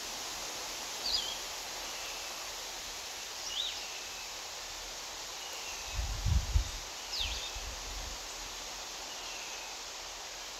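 Outdoor ambience: a steady hiss with birds chirping, three short sweeping chirps spread through it and fainter short calls every couple of seconds. Low thumps about six seconds in and again a second later are the loudest sounds.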